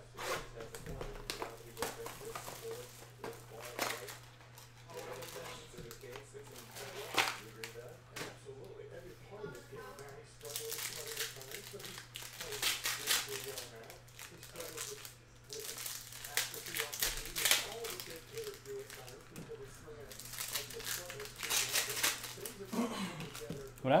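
The sealed box is torn open, then trading-card pack wrappers are ripped and crinkled by hand, in repeated bursts of rustling and tearing that are busiest through the second half. A steady low hum runs underneath.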